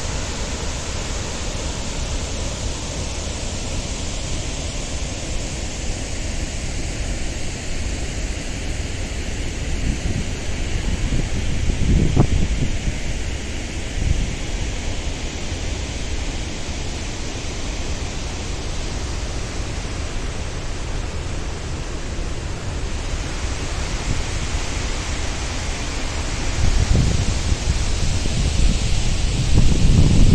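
Steady rushing noise of a large waterfall. Gusts of wind buffet the microphone about twelve seconds in and again over the last few seconds.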